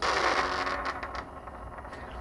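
Arduino-generated lightsaber ignition sound from a small speaker: a hissing whoosh that starts suddenly and fades over about a second and a half into a faint steady hum.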